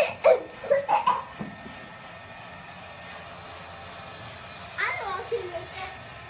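A young boy laughing in a few short, loud bursts, then a brief burst of his voice near the end.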